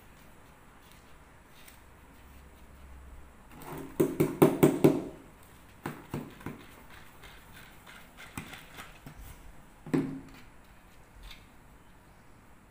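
Handling noise from plastic plant pots and potting soil: a quick run of sharp knocks and clatter about four seconds in, followed by a few scattered clicks and one more knock near the end.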